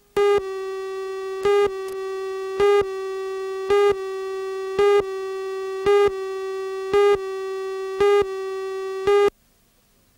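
Videotape countdown leader tone: a steady buzzy electronic tone with a louder pip about once a second, nine pips in all, cutting off suddenly shortly before the end.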